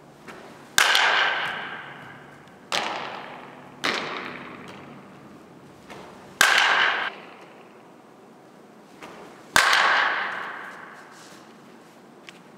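Softball bat hitting pitched balls: five sharp cracks, each trailing a long echo through the large indoor hall.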